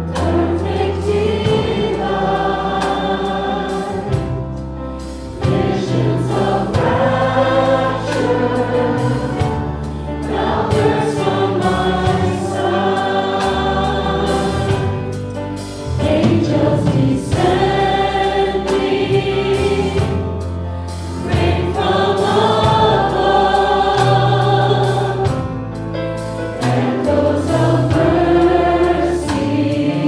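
A congregation singing a slow worship song along with a live band, in long held notes phrased a few seconds apart over a sustained bass line.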